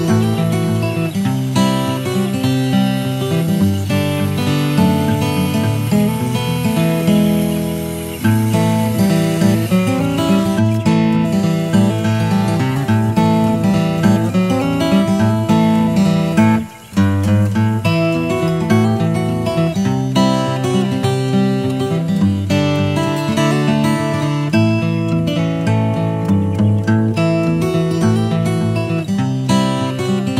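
Background music led by strummed acoustic guitar, with a brief break a little past the middle.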